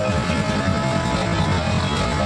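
Music playing steadily, with a plucked string instrument among it.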